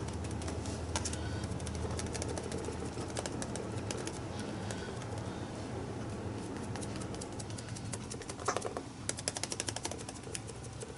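Sponge dabbing black paint through a stencil onto a paper journal page: a soft, irregular patter of taps with a quicker run of taps near the end, over a steady low hum.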